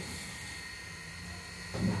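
Steady low background hum with a faint constant high-pitched whine, and no distinct clicks or rattles from the blind's cord. A single spoken syllable comes just before the end.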